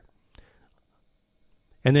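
A pause in a man's narration: near silence with one faint short click about half a second in, and his speech resumes near the end.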